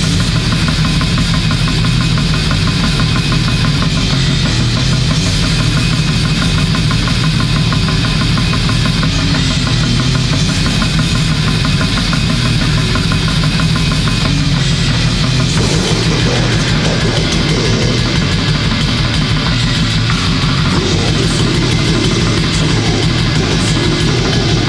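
Bestial black metal: distorted guitar and bass over fast, relentless drumming, loud and dense. About two-thirds of the way in, a wavering higher line joins above the riff.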